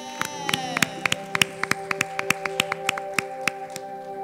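Scattered hand claps from a few people, sharp and irregular, over a sustained keyboard chord.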